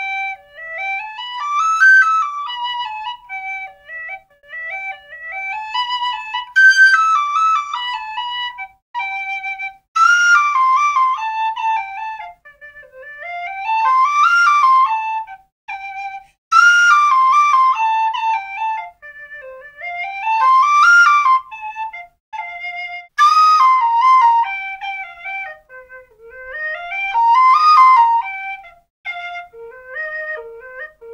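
Lír chrome-plated brass high tin whistle played solo and unaccompanied, without processing: a lively tune of quick runs that climb and fall, in short phrases with brief breaks between them.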